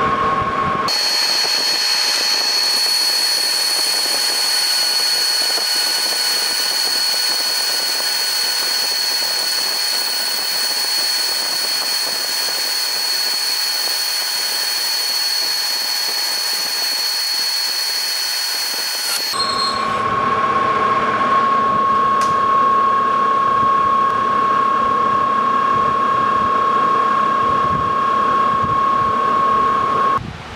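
Lodge & Shipley lathe turning a cast iron pulley while a boring bar cuts the inside of the hub, running as a steady high-pitched whine. About two-thirds of the way through it switches abruptly to a lower steady tone with more rumble underneath.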